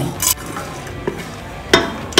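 Whole black peppercorns and cumin seeds tipped into a steel pot of oil, a brief rattle just after the start, then a sharp metallic clink against the pot near the end.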